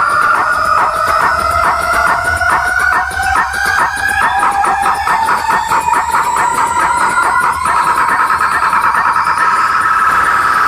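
Loud electronic dance music from a large DJ sound system: a synth tone rising slowly in pitch and chopped into a fast stutter over low bass. About three quarters of the way in, it levels off into a steady, rapidly trembling tone.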